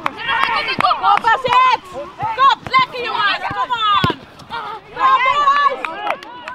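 Shouted calls from football players and coaches during open play, short overlapping voices. A few sharp knocks cut in among them, the strongest about four seconds in.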